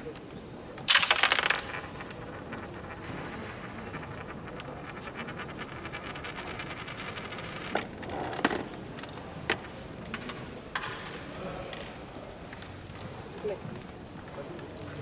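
Carrom break shot: the striker is flicked into the centre cluster of wooden carrom men, giving a loud burst of rattling clacks about a second in as the pieces scatter across the board. A few single clicks follow later.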